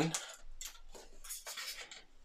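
Light scraping and rustling of small model-kit parts being handled and fitted by hand, a few faint scrapes about half a second in and again around the middle.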